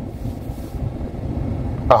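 Steady low rumble heard inside the cab of a parked truck: the engine idling. A short bit of a man's voice comes in right at the end.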